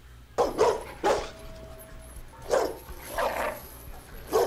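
A dog barking about five times in short, separate barks, on the soundtrack of a TV episode.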